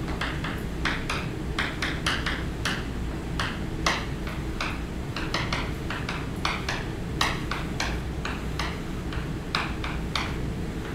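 Chalk writing on a blackboard: an irregular run of sharp taps and short scratches, about three a second, as letters are chalked onto the board.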